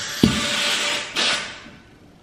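Air hissing out of an exercise ball's inflation valve while the valve plug is pushed in, with a knock about a quarter second in and a second burst of hiss about a second in; the hiss dies away shortly before the end.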